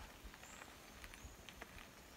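Near silence, with a few faint ticks.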